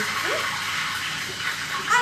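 Steady sizzling hiss of food frying in a pan, with a brief questioning "mm?" from a voice early on.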